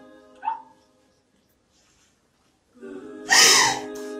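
A woman crying in distress: a short falling sob about half a second in, a pause, then a loud anguished wail near the end. Sustained background music comes in about three seconds in, under the wail.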